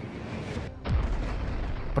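A missile strike's explosion: a sudden deep boom about a second in that keeps rumbling low, over faint background music.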